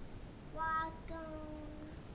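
A young child's voice in two drawn-out, sing-song notes at a high, steady pitch, the second note longer and slightly lower.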